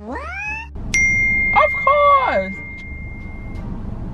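A cartoon Minion's shrill voice: a rising squeal at the start, then a second cry. A long, steady, high tone starts sharply about a second in and holds under that second cry.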